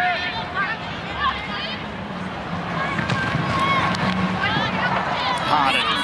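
Ground ambience of a rugby league match: a steady crowd hum with scattered short calls and shouts from players on the field.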